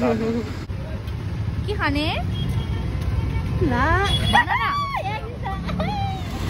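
Steady street rumble of traffic and crowd, with high-pitched voice sounds that swoop up and down in pitch, one about two seconds in and several drawn-out ones in the second half.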